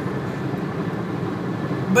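Steady low rumble of a car heard from inside its cabin, with no other sound rising above it until a voice comes in at the very end.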